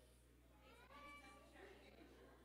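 Near silence with faint, distant voices; a brief high, gliding voice sound about a second in.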